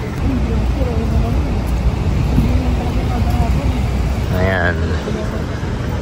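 Steady low rumble of city road traffic, with a short stretch of a man's voice about four and a half seconds in.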